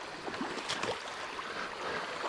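Small trout creek running steadily, an even rush of water over a shallow riffle.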